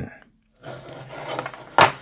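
Metal-cased switching power supply slid and turned on a wooden workbench, its case rubbing and scraping on the wood, then one sharp knock as it is set down, near the end.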